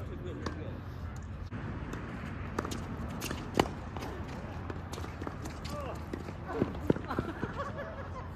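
Sharp knocks of a tennis ball being hit and bouncing during doubles play, a few scattered hits with the loudest a little past the middle, over faint voices and a steady low background hum.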